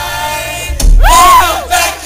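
Loud shouting at a live band show: a note from the band rings on, then about a second in comes a loud yell whose pitch rises and falls, amid crowd cheering.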